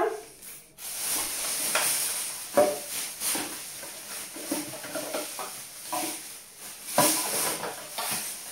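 Rustling and clattering of someone rummaging through a bag of empty plastic toiletry bottles and tubes, with several sharper knocks of containers against each other.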